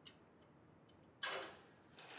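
A few faint light clicks, then a short, louder knock a little past the middle that dies away quickly.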